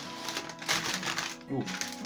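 Crumpled brown packing paper crinkling as it is pulled out of a cardboard box, over steady background music. A brief spoken "ooh" comes near the end.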